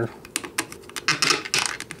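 Plastic action figure and its display base handled by hands: a quick, irregular run of small plastic clicks and taps.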